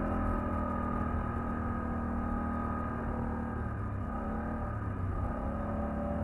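Polaris ATV engine running under way, heard from the rider's seat, with a steady pitched drone. Its pitch drops and wavers a little past halfway as the engine eases off, then picks back up near the end.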